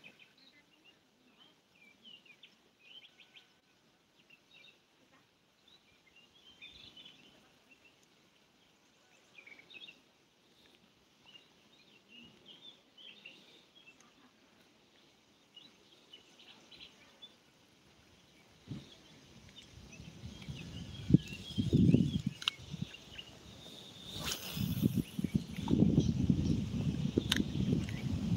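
Small birds chirping faintly, scattered short calls. In the last several seconds a louder low rumbling noise with sharp knocks comes up on the microphone.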